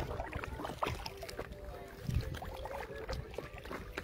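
Small water sounds around a floating paddleboard: gentle lapping and light knocks over a low rumble, with faint distant voices.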